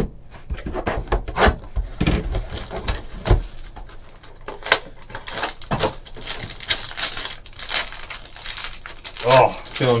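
Trading card pack wrappers being sliced with a box cutter and torn open by hand: a run of crinkling and tearing of plastic and foil, with dull knocks of packs handled on the table during the first few seconds.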